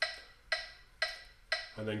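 Metronome clicking at 120 beats per minute: four sharp clicks, evenly spaced half a second apart.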